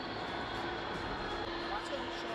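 Large-hall ambience: a steady hum with a faint constant tone and indistinct voices of people milling about.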